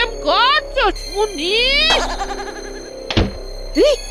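Cartoon sound effects over background music: a rising comic pitch glide that cuts off suddenly about two seconds in, then a single low thud a little after three seconds.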